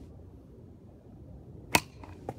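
A single sharp crack near the end as wooden nunchaku strike a coconut with a glancing blow that shears part of the shell off.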